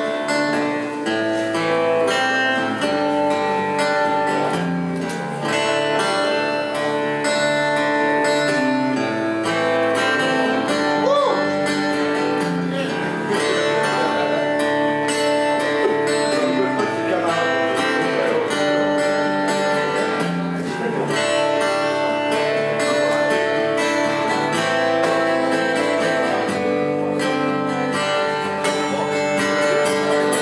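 Acoustic guitar strummed steadily, sustained chords changing every second or two.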